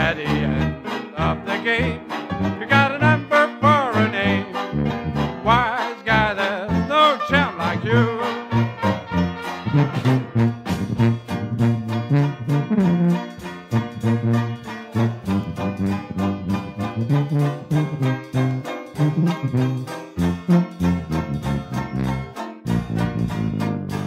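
Traditional jazz band of trumpet, clarinet, trombone, banjo, tuba and drums playing a swinging number over a steady beat. The horns' wavering melody lines stand out in the first half.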